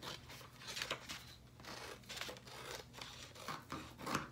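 Scissors cutting through a sheet of printer paper, a run of repeated snips as the blades close stroke after stroke along the line.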